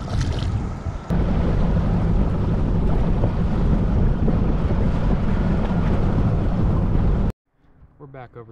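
Fishing boat running at speed under its 90 hp outboard motor: a steady engine drone mixed with heavy wind buffeting on the microphone. It starts abruptly about a second in and cuts off suddenly near the end.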